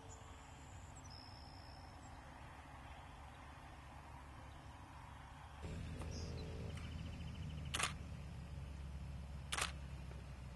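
Faint, quiet outdoor sound at first, then, about halfway through, a low steady drone from the Zenith CH701 light aircraft's engine idling close by. Two sharp clicks come near the end.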